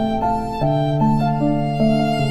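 Slow, gentle instrumental relaxation music: a melody moving note by note over a held low bass note.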